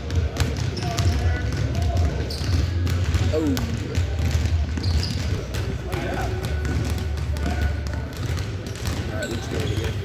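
Basketballs being dribbled on a hardwood gym floor: many overlapping, irregular bounces from several balls at once, with children's voices in the background.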